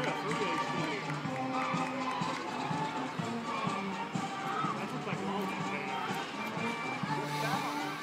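Marching band brass playing long held notes of a march across a stadium field, with spectators nearby talking over it.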